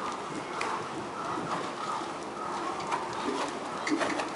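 Knabstrupper horse cantering on the lunge, its hoofbeats faint and irregular.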